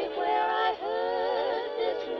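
Waltz music playing from a 7-inch vinyl single on a portable suitcase record player: a melody of held notes with vibrato over a band accompaniment, with the highs dulled.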